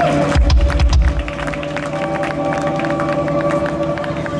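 Scattered clapping from a concert crowd over the first couple of seconds, with a deep bass note about half a second in. Steady held synth tones from the stage sound underneath.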